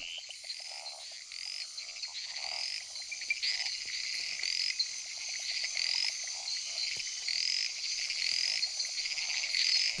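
Night rainforest frog chorus: frogs repeat short chirping calls about twice a second, each rising then falling in pitch, over a steady high insect buzz.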